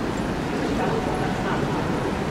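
Crowd of racegoers murmuring and chattering at a steady level, many voices blended together with none standing out.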